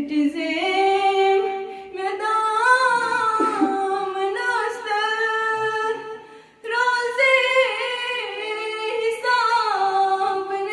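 A girl singing a Kashmiri naat unaccompanied into a microphone, holding long, ornamented notes, with a short pause about six seconds in.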